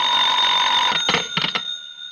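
Telephone bell ringing, stopping about a second in, then a few short clicks as the receiver is picked up.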